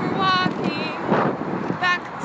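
Road traffic noise passing close by, with wind on the microphone, under short bits of a woman's voice.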